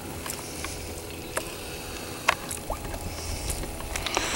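Low steady rumble with a faint hum, the background of a boat on the water, broken by a few short light clicks and taps from handling the fish and tape measure.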